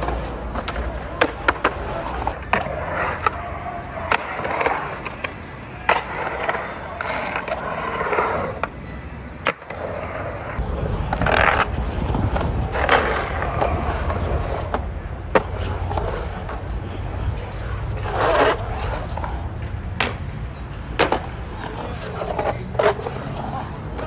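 Skateboard wheels rolling on a concrete bowl, a steady rumble, with sharp clacks of the board against the concrete at irregular intervals.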